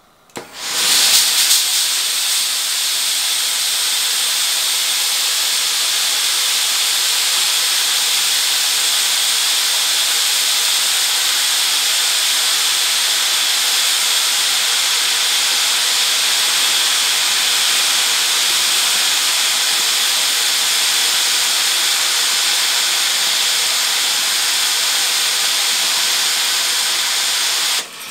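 Two steam generator irons, a new Tefal Express Anti Calc and an older model, blasting steam from their soleplates at the same time: a loud, steady hiss that starts about half a second in and cuts off suddenly near the end. One of them spits water among the steam.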